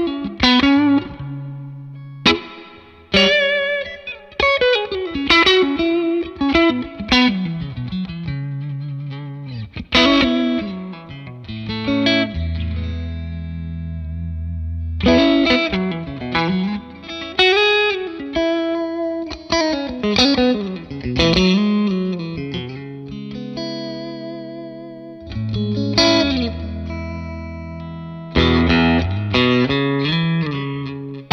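FGN J Standard Odyssey JOS-2TDM electric guitar played through an amplifier on its neck pickup. Melodic single-note lines with bends and wide vibrato are broken up by struck chords and held notes.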